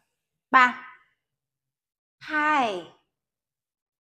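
Only speech: a woman's voice calling out two counts of a countdown, one short word about half a second in and a longer word falling in pitch about two and a half seconds in, with silence between.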